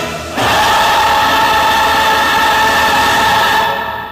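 A choir singing the closing chord of a Korean revolutionary song. The chord enters about half a second in, is held steadily, and begins to fade near the end.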